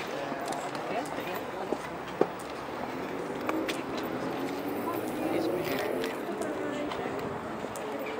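Several people talking in the background, no words clear, with one sharp click a little over two seconds in.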